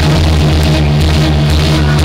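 Electronic dance music from a live DJ set played loud over a club sound system, with a heavy steady bass line under a dense mix.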